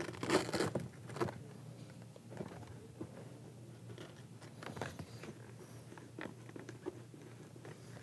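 Faint, scattered scratching, rustling and small clicks of hands pressing a helmet speaker into the foam and fabric liner of its pocket and tucking its wire. There is one louder scrape just after the start.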